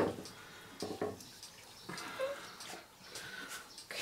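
Quiet handling noise: a few soft knocks and rustles as a freshly poured canvas is lowered and set down on plastic sheeting.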